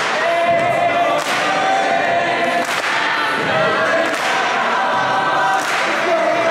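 Mixed a cappella choir singing a gospel-style arrangement, with held vocal lines over a sharp percussive hit about every one and a half seconds.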